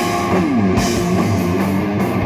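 Live doom metal band playing: heavily distorted electric guitar over drums and crashing cymbals, with the guitar sliding down in pitch about half a second in.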